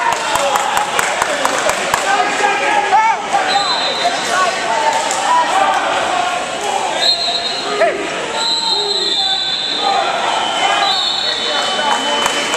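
Busy wrestling-tournament hall: many overlapping voices, scattered sharp thumps and slaps, mostly in the first few seconds, and several short, steady high-pitched tones from whistles or buzzers, all echoing in the large gym.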